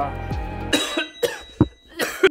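A man coughing in a quick run of four or five short, sharp coughs; background music cuts off just before the first.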